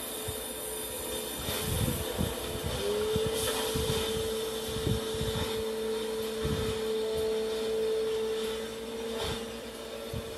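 Industrial machinery running with a steady hum and irregular low knocks; about three seconds in, a steady motor whine comes in and holds.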